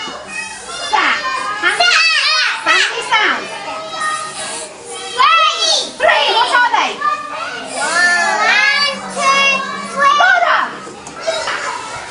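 Several young children's voices calling out together, sounding out the separate speech sounds of a word to spell it, with overlapping rising and falling calls.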